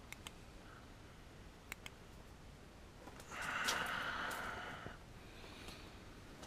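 A man's long, breathy exhale, starting a little over three seconds in and lasting under two seconds, with a few faint clicks and scuffs before it.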